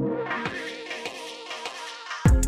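Background music in a quiet, drumless passage: steady buzzy tones that fade gradually before the beat returns.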